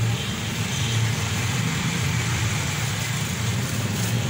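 A steady low mechanical hum, like an engine running.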